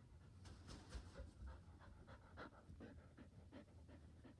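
Border Collie panting: a run of quick, faint breaths beginning about half a second in.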